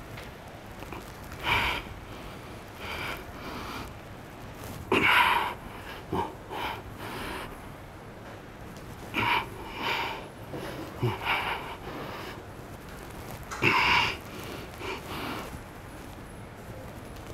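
A man breathing hard under a heavy incline dumbbell press, with short forceful exhales every second or two in time with the reps.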